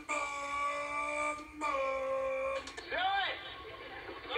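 A person's voice wailing one long held high note, broken twice, from a clip played through laptop speakers; near the end a short rising-and-falling cry follows.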